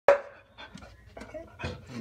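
A dog barks once, loudly, right at the start, then makes a string of softer short sounds. She is agitated by a cat outside.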